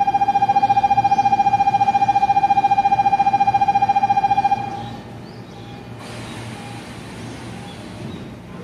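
Station platform departure buzzer sounding a steady, fast-fluttering tone for about four and a half seconds, then stopping; a hiss follows as the train's doors close.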